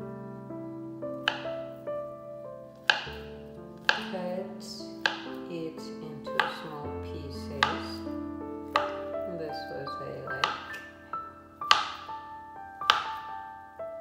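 A kitchen knife slicing a peeled banana on a plastic cutting board, the blade knocking sharply on the board about once a second, over background music with sustained notes.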